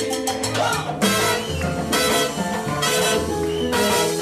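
Live salsa band playing without vocals: bass, piano and timbales-led percussion, with a horn section of trombones and saxophone. A loud full-band accent hits about a second in, and the band plays on fuller and brighter after it.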